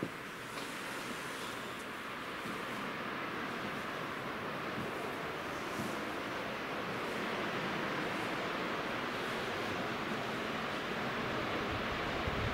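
Gulf of Mexico surf washing onto the beach, a steady hiss of waves that swells slightly louder over the seconds.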